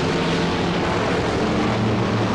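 A pack of dirt-track Sportsman stock cars with big-block Mopar and small-block Chevrolet V8s running hard together, their engine notes overlapping in a steady drone.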